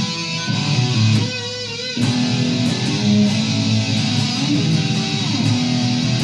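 Electric guitar played through an amplifier, a Firefly FFST relic Stratocaster-style guitar, running through a lead line of changing single notes. About a second in, one note is held with vibrato for under a second before the line moves on.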